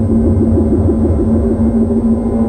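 Ambient synthesizer music: a low drone held steadily on one pitch over a deep rumble.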